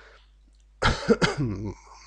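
A man coughs and clears his throat, starting suddenly about a second in after a brief pause, in a few short bursts.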